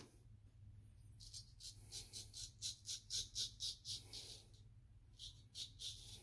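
Straight razor with a freshly honed edge cutting through lathered beard stubble: a run of short, crisp scraping strokes, about four or five a second, then a few more near the end.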